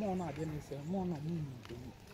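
A person's voice in two short, untranscribed phrases with a rising and falling pitch, like talk mixed with laughter; it fades out after about a second and a half.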